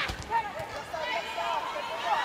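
Indoor volleyball rally: a sharp smack of a hand striking the ball right at the start, then scattered voices, players calling and the crowd murmuring.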